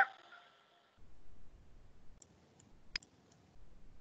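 Quiet stretch with a few faint sharp clicks, one clearer click about three seconds in, over a faint intermittent low rumble.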